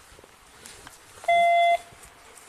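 A single loud electronic beep: one steady tone held for about half a second, just past the middle.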